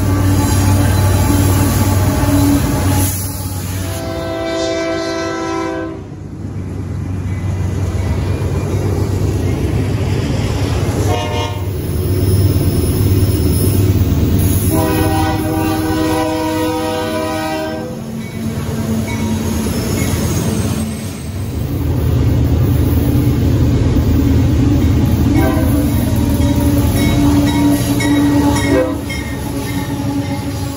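Union Pacific diesel freight locomotives running past loudly, sounding their multi-note horn: a long blast a few seconds in, a short blast about eleven seconds in, then another long blast around the middle.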